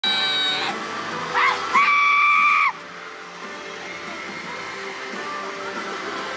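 Shrill screams from fans near the microphone, a short one at the start and a longer held one that breaks off about two and a half seconds in, then music under the audience noise.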